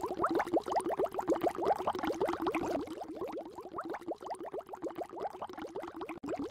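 Bubbling water sound effect: a quick, dense run of short rising bloops, about ten a second, quieter in the second half.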